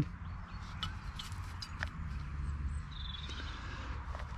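Quiet outdoor background with a steady low rumble, a few light clicks from handling camp cookware, and a short high bird chirp about three seconds in.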